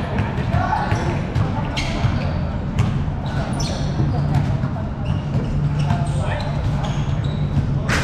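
Basketballs bouncing on a hard court, with a few shoe squeaks and players' voices in the background. A steady low hum comes up about halfway through.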